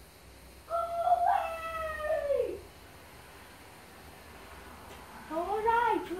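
Kitten meowing once: a long drawn-out call starting about a second in, held steady and then falling in pitch at the end.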